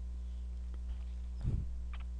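Steady low electrical hum from the recording setup, with a brief soft low sound about one and a half seconds in and a faint click just before the end.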